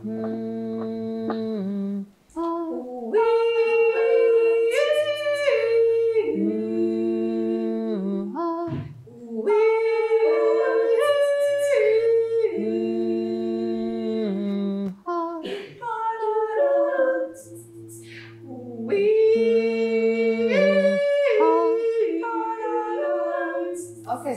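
Several voices improvising wordless, interlocking vocal loops a cappella: a low sustained note, a repeating lower figure, and counter-melodies layered on top, the whole pattern coming round about every seven seconds.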